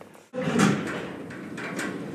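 Lift doors sliding open, starting suddenly about half a second in and settling into a steady noisy rumble.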